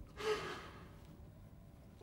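A man sighing once: a short, heavy breath out about a quarter second in, then fading.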